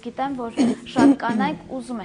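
Speech only: a woman talking in conversation.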